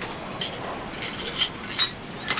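Shards of broken picture-frame glass clinking against a tiled floor as they are gathered up by hand: a few separate light, bright clinks.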